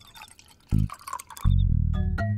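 Liquid poured from a bottle into a steel tumbler, a trickling splash lasting about a second and a half, over background music with a bouncing, repeated bass line.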